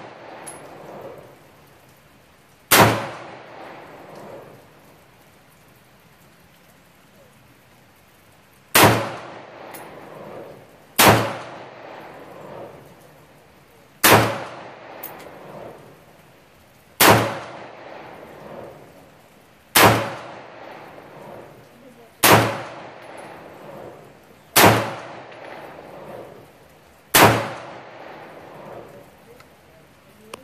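Smith & Wesson M&P AR-15-style rifle fired in slow, single aimed shots: nine shots, mostly two and a half to three seconds apart with one longer pause of about six seconds after the first. Each crack is followed by a short echo trailing off.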